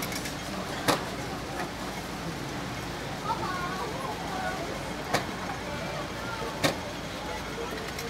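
Busy shop ambience: a steady background hum with faint distant voices and three sharp clicks, about one, five and six and a half seconds in.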